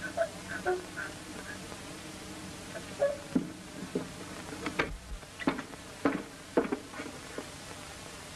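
A boy crying quietly: a few short whimpers, then a run of short falling sobs and sniffles about halfway through. All of it sits over the steady hiss and buzz of an early-1930s optical film soundtrack.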